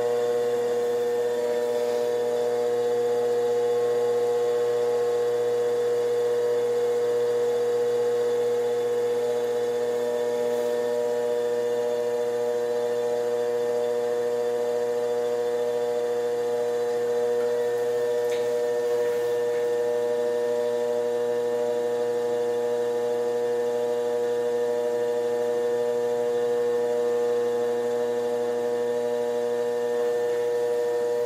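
Electric potter's wheel motor running at a steady speed: a continuous, unchanging hum.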